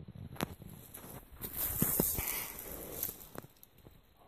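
Footsteps crunching through dry leaf litter and brush, with a few sharp snaps of twigs, loudest in the middle.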